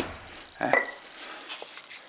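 Metal chairlift grip parts being handled and knocked together, with a short, ringing metal clink about three-quarters of a second in.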